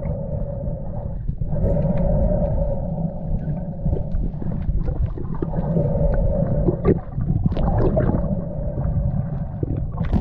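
Underwater sound picked up by an action camera as a diver swims: a low rumble of moving water with scattered sharp clicks, under a steady droning tone that drops out briefly a few times.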